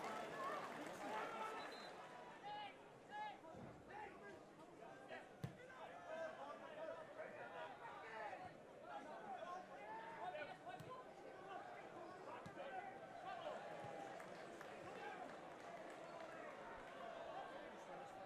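Faint football stadium ambience: scattered shouts and calls from the crowd and players over a steady background hum of the ground, with a few dull thumps of the ball being struck.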